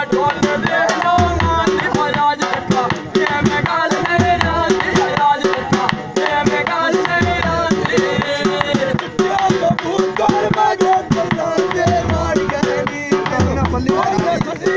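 A dhol drum beaten with a stick in a quick, steady rhythm, with heavy bass strokes, accompanying a man singing a Punjabi mahiya folk song.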